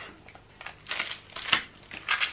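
Packaging being handled: a few short bursts of plastic-wrap rustling on a small cardboard box, with a sharp click about one and a half seconds in.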